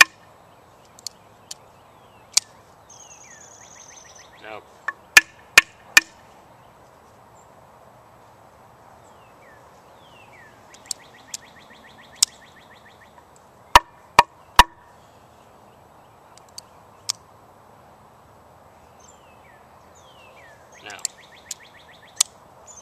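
Sharp knocks of a Spyderco Paramilitary 2 folding knife struck hard against a wooden board to test whether its lock will fail, mostly in sets of three in quick succession; the lock holds.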